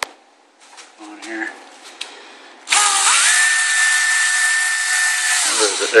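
Cordless drill starts about halfway in, rises quickly to a steady whine and holds it while the bit bores through a hollow synthetic rifle stock, then winds down just before the end.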